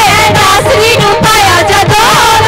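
A group of young female voices singing a Punjabi Christian devotional song (Masih geet) into microphones, with a gliding, ornamented melody. Dhol and tabla drumming keeps a steady beat underneath.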